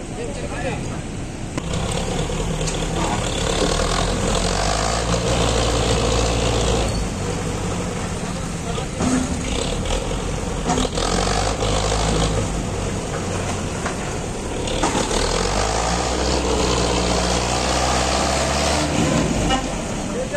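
A tractor's diesel engine running hard under load as its front loader pushes a stalled road roller over loose gravel to push-start it. The engine gets louder about two seconds in and rises and eases a few times.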